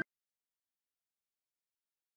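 Complete silence: the sound track drops out entirely, with no sound at all.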